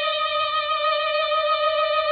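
A single steady electronic tone held on one unchanging mid-pitched note.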